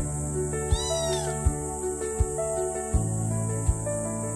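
A kitten meowing once, a short call that rises and falls about a second in, over background music with a steady beat.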